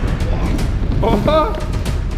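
Wheels of a four-wheeled skateboard-scooter rolling over a wooden skatepark ramp: a steady low rumble with scattered clicks.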